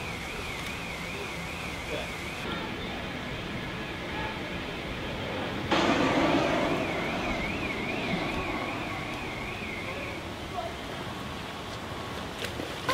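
Steady rushing water noise from a poolside rock waterfall, stepping louder about six seconds in. Through much of it a high tone wavers evenly up and down.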